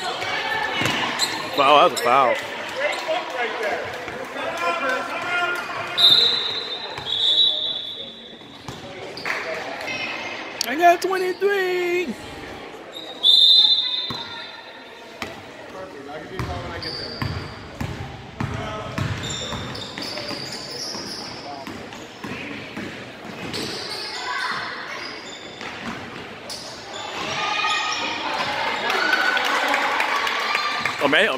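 Basketball game in a gym: a ball bouncing on the hardwood floor and voices calling out around the court. A referee's whistle sounds about six seconds in, again a second later, and with a longer blast about thirteen seconds in.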